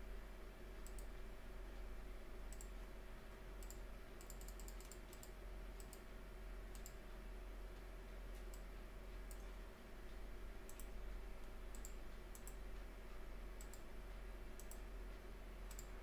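Faint, irregular clicks of a computer mouse, some in quick runs, over a low steady hum.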